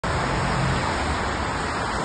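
Steady noise of road traffic passing on a wet road.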